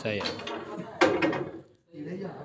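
A single sharp knock about a second in, ringing briefly, with men talking around it.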